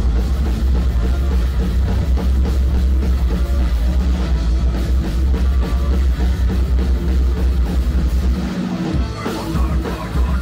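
A live thrash/hardcore band playing loud and fast: distorted electric guitars, bass guitar and a pounding drum kit. The bass drops out briefly about eight and a half seconds in before the full band comes back.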